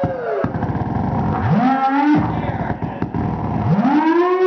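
Two moan-like calls, each rising steeply in pitch and then held briefly, about two seconds apart, over a busy, noisy background.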